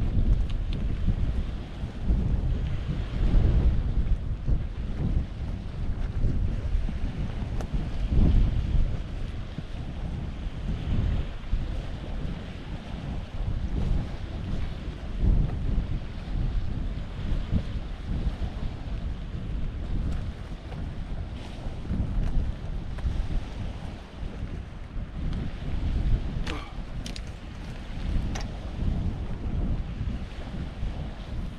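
Wind buffeting the microphone: a gusty low rumble that rises and falls throughout. A few sharp clicks come near the end.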